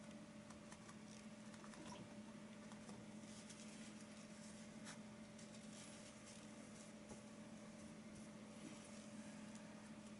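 Near silence: a steady low electrical hum, with faint scattered scratches and taps of a paintbrush working acrylic paint on canvas.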